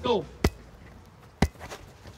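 Two sharp thuds about a second apart as a rugby player drives into a defender to clean him out of a ruck.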